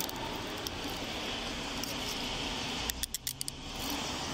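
Steel handcuffs ratcheting shut on a wrist: a quick run of about six sharp metallic clicks about three seconds in, over steady vehicle noise.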